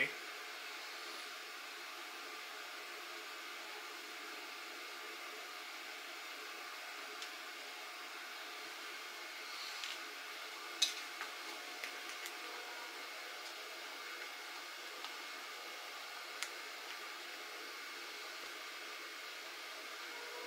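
Steady fan hum of workbench electrical equipment, with a few light clicks and taps about halfway through as alligator clip leads are handled and clipped onto the battery terminals.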